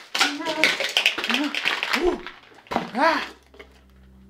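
Plastic candy wrappers and small hard candies rustling and clicking as hands sweep them across a wooden table, busiest over the first two seconds. Short, high-pitched hummed exclamations from a voice run through it.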